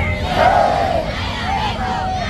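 A crowd of protesters shouting a slogan together, the loudest cry about half a second in and shorter shouts near the end.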